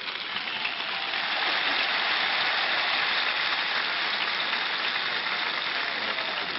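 Large crowd applauding: a dense, even wash of clapping that builds over the first second and then holds steady.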